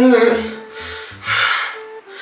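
A man's words trail off, then about a second in comes one loud breathy gasp, under a second long.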